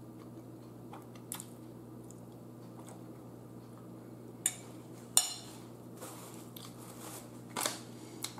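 Close-up chewing of a mouthful of spaghetti with meat sauce. Two sharp clicks of a metal fork on the plate come about halfway through.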